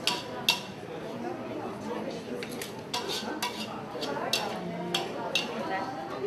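Metal spatula clinking and scraping against a steel wok as fried noodles are scooped out onto a plate. It gives a string of sharp clinks, about nine, every half-second to second.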